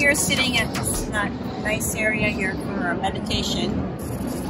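A woman speaking, over a steady background din.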